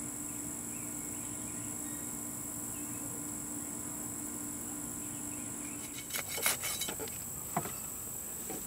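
Insects chorusing outdoors: a steady, high-pitched drone. A few brief rustles come about six and seven and a half seconds in.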